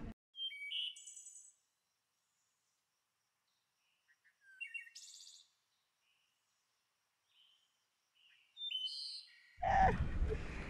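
Small birds chirping and trilling in three short bouts of about a second each, with dead silence between them.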